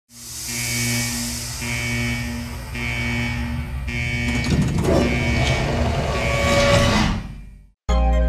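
Logo-intro music: a pulsing electronic pattern repeating about once a second over a low drone. About four seconds in, a rush of clicking, swooshing sound effects joins it, builds, and cuts off suddenly just before the end.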